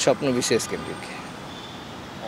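A man's voice says a word at the start, then steady outdoor background noise of distant road traffic.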